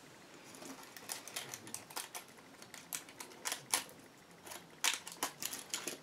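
Hands working a synthetic-fibre wig and the hair around it, making a run of irregular soft clicks and rustles, loudest about five seconds in.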